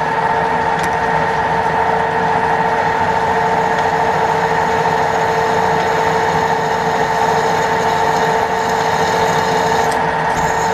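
Drill press running in its high speed range while a letter-I twist drill cuts into a metal workpiece; the sound is steady and even in pitch throughout.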